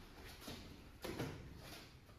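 Quiet room tone with a faint steady high whine and a couple of soft knocks, about half a second and about a second in.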